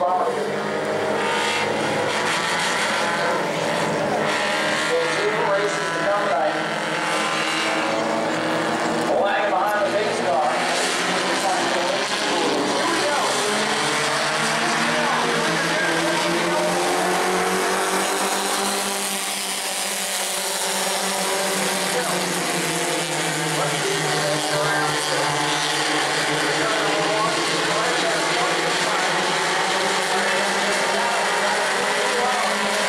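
A pack of Bomber-class stock cars racing together on a short oval, several engines running hard at once, their pitches rising and falling as the cars pass and change throttle.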